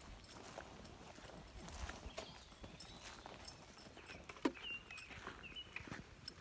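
Faint footsteps of a hiker walking on a dirt forest trail: soft, uneven steps and scuffs, with one sharper tap about four and a half seconds in.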